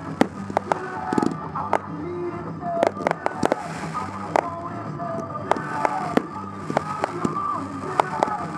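Fireworks going off in quick, irregular succession, a dozen or more sharp bangs and crackles, over music playing underneath.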